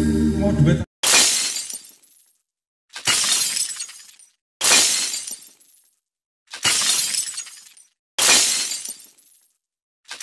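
Electronic keyboard music cuts off about a second in, followed by five sudden firework bursts, each starting sharply and fading out over about a second, one every one and a half to two seconds.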